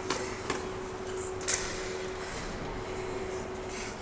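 Room tone with a steady hum that stops a little over halfway, a few short clicks near the start and a brief rustle about one and a half seconds in.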